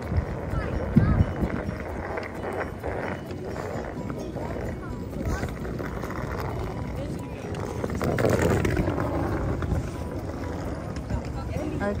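Busy city street ambience: background chatter of passers-by over a low, steady traffic rumble, with a few scattered knocks.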